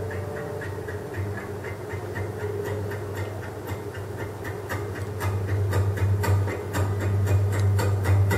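Solo acoustic guitar in an instrumental passage: steady, percussive picked notes at about four to five a second over a sustained low bass note, growing louder about five seconds in.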